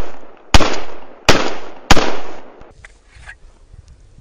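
Three shots from a JSD Arms 1911 .45 ACP pistol, about two-thirds of a second apart, each followed by a long echoing decay.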